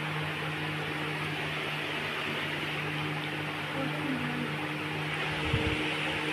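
Steady whirring hum of an electric fan running, even throughout, with a brief soft low bump near the end.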